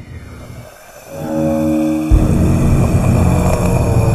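Film soundtrack sound design: after a brief dip, a low held chord swells in about a second in. Just after two seconds a sudden heavy hit sets off a loud, dense low rumble that carries on.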